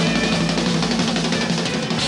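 Live electric blues band: electric guitar playing lead over a drum kit and electric keyboard, with the drums busy and prominent.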